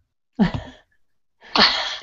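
Women laughing: a short breathy laugh about half a second in, then a louder burst of laughter near the end.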